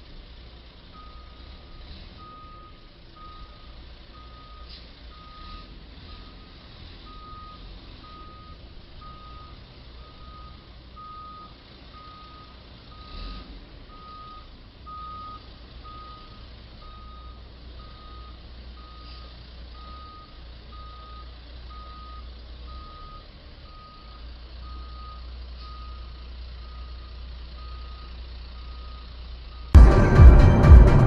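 Vehicle reversing alarm beeping steadily, a single high tone about once a second, over a low engine rumble.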